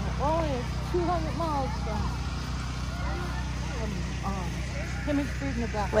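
Voices of people talking and children calling in the background, over a steady low mechanical hum like an idling engine.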